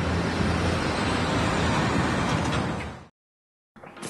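Logo-intro sound effect: a loud, noisy rushing rumble over a low droning hum, which cuts off abruptly about three seconds in, followed by a short silence.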